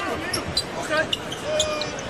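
Basketball shoes squeaking on a hardwood court as players cut and jostle, in short squeals, one held a little longer near the end, over a steady background of arena noise.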